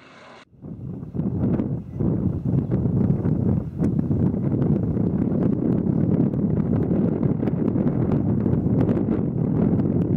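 Wind buffeting an outdoor camera microphone: a loud, rough, low rumble with frequent crackles, cutting in sharply about half a second in.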